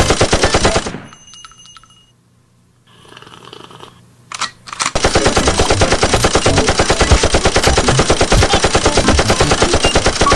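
A loud, rapid, evenly spaced rattle of sharp hits, many per second. It drops away about a second in, leaves a quiet gap with a short burst, and resumes at full strength about five seconds in.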